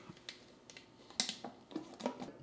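Glass lid being set onto a Crock-Pot slow cooker's crock: a few light clicks and clinks, the sharpest about a second in.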